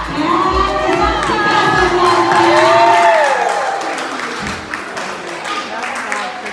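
Dance music with a steady low drumbeat and voices, which stops about two seconds in. A long rising-and-falling shout follows, then cheering and chatter from a crowd of women.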